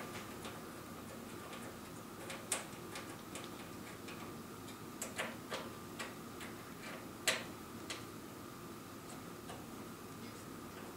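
Light, irregular metal clicks and ticks of a steel Allen key seating in and turning the socket cap screws of a flying-lead clamp as they are retightened, the sharpest click about seven seconds in.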